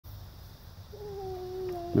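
A beagle giving one long, drawn-out bay, slightly falling in pitch, starting about a second in; the hound is on a rabbit's scent.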